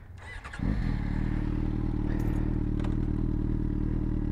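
Yamaha motorcycle engine starting about half a second in, then idling steadily.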